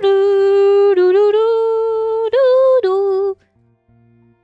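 A woman's voice singing a short run of long, sustained notes, loud and close, sliding up and down between them. It stops abruptly a little past three seconds in.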